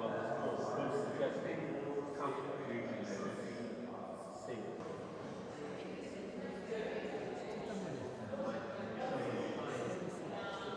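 Indistinct chatter of many people talking at once in a large gallery hall, running on without a break.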